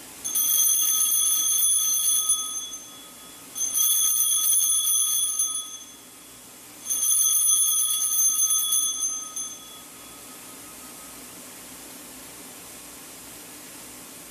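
Small altar bells (Sanctus bells) shaken three times, each a high ringing peal of about two seconds that fades away. They mark the elevation of the chalice at the consecration.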